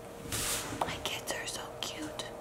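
Soft whispering: breathy, hushed voice sounds with no full-voiced words.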